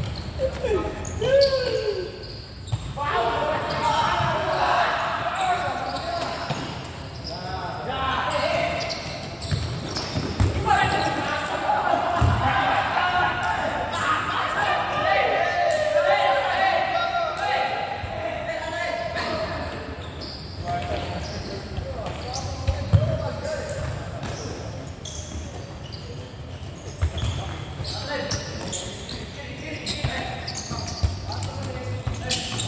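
Futsal players calling and shouting to each other during play, with a few sharp thuds of the ball being kicked and bouncing on the court, the loudest about two-thirds of the way through. The sound carries in a large roofed hall.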